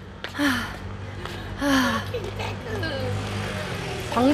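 Low, steady rumble of road traffic, with a few faint, brief snatches of voice over it.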